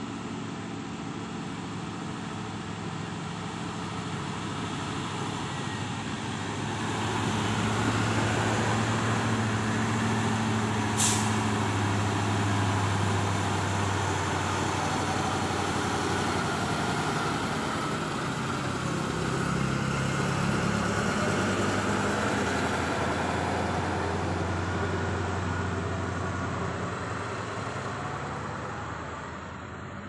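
Heavy truck's diesel engine labouring up a steep grade: a low, steady drone that builds about a quarter of the way in and eases off near the end. About a third of the way in comes one short, sharp hiss of air.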